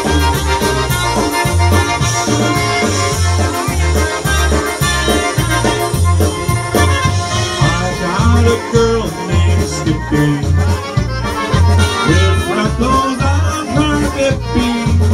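Live polka band playing an instrumental passage: accordion and trumpet over drums and a steady bass beat of about two a second.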